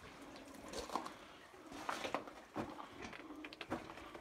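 Footsteps crunching and scuffing on loose rock and gravel in a mine tunnel: a handful of irregular, quiet steps.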